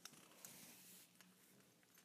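Near silence: room tone, with a faint click at the very start and another faint one about half a second in.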